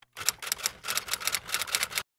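Rapid typing clicks, about eight to ten keystrokes a second, in an even run that cuts off sharply.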